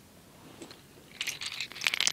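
Small rocks clicking and crunching together as they are handled. The handling starts a little past halfway and gets louder toward the end.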